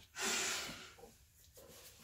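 One sharp sniff through the nose, lasting under a second.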